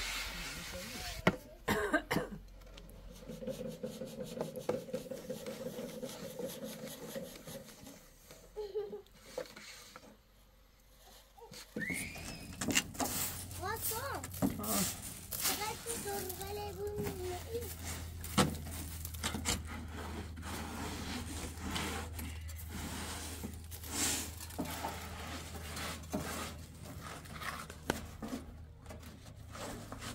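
Straw hand broom sweeping sand across a metal pickup truck bed: a quick run of short scraping strokes that starts about twelve seconds in.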